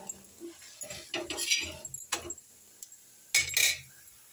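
A perforated steel spatula scraping and clinking against a flat tawa as a besan chilla is lifted and flipped: a few short scrapes, the loudest near the end.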